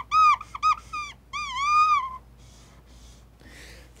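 Dry-erase marker squeaking on a whiteboard as it is stroked back and forth: a quick run of short squeaks, then one longer squeak that stops about two seconds in.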